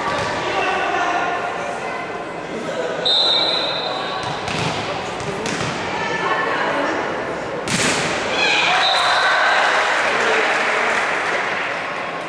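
Volleyball being played in an echoing sports hall: a referee's whistle blows a short steady blast about three seconds in and more faintly near the end, and the ball is hit sharply several times, among the voices of players and spectators.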